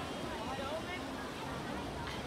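Indistinct voices of a group talking and calling out, heard over a steady low outdoor rumble of wind and water.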